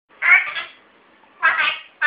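African grey parrot talking, mimicking speech: two short utterances of about half a second each, one just after the start and one about a second and a half in.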